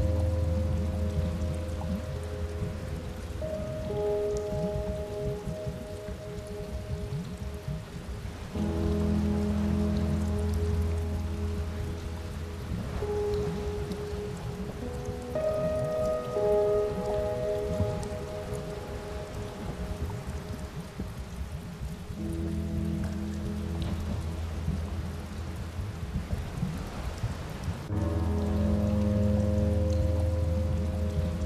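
Ambient holding music: soft sustained synth chords that shift every few seconds over a deep steady drone, with a dense crackling noise texture running underneath.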